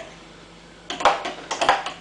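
A fork clinking and scraping against a juice jug while freshly made vegetable juice is stirred: two short runs of clinks, about a second in and again near the end.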